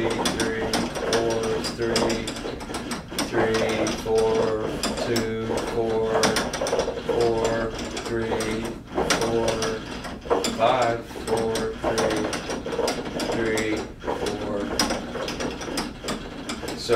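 Low-voltage electric drive and gearing of a motorised rotating arm running continuously, a whirring, clicking mechanical sound that pulses in a quick even rhythm as the arm turns at about 30 RPM.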